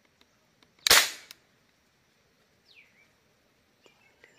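A marble gun fires one sharp, loud shot about a second in, dying away quickly. A faint falling whistle follows near three seconds.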